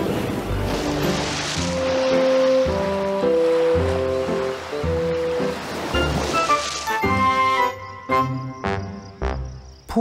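Cartoon background music of stepping melodic notes, with a hissing rush of water spray over the first seven seconds or so as a whale's spout showers down. Near the end the music carries on with two sharp taps.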